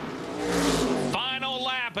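Modified race cars' V8 engines at full throttle, the sound swelling over the first second as the cars pass. A commentator's voice comes in over it in the second half.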